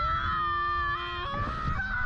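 Two young men screaming on a slingshot thrill ride, one long, high-pitched scream held steady with a lower voice under it. The scream breaks off a little past halfway, over a low rumble.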